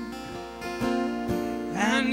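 Two acoustic guitars playing together, strummed chords ringing on with a few separate strokes.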